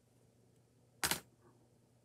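Steel hemostats set down on a cutting mat: one short, sharp clack about a second in, over faint rustling of fabric being handled.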